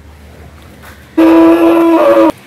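A cow mooing: one loud, steady, high call that starts suddenly about a second in and is cut off sharply.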